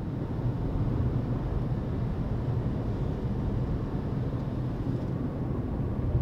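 Steady low rumble of a moving vehicle's road noise, heard from inside the vehicle.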